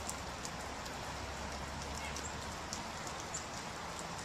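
Light rain falling: a steady hiss with scattered small drops ticking.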